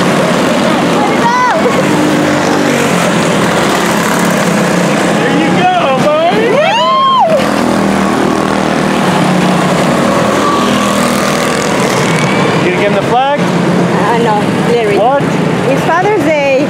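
A pack of quarter midget race cars with Honda 160 single-cylinder four-stroke engines running at race speed on an asphalt oval, their engine notes rising and falling as cars go by. The biggest sweep up and down in pitch comes about six to seven seconds in.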